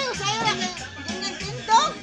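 Children's voices shouting and squealing over dance music, with one loud, high-pitched shout near the end.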